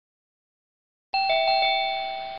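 A two-note bell chime begins about halfway through: a higher note, then a lower one, each struck again, ringing on.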